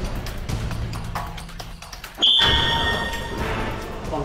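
Background music for a TV game segment. About two seconds in comes a sudden loud electronic buzzer-like sound effect with a steady high tone, fading within about a second, that signals the start of the round.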